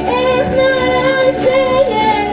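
A woman singing one long held note with a slight waver, over the plucked bowl-backed lute she is playing.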